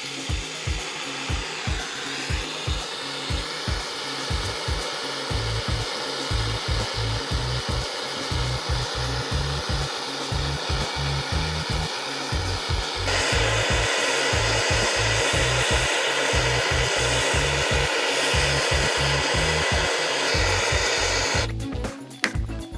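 Handheld butane gas torch burning with a steady hissing flame, turned up about two-thirds of the way through and shut off just before the end. Background music with a steady beat plays under it.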